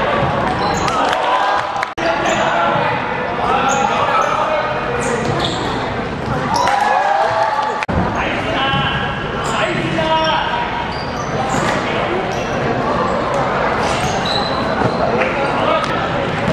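Indoor basketball game: a basketball bouncing on the hardwood court, short high squeaks and players' and spectators' voices shouting over each other, all echoing in a large sports hall.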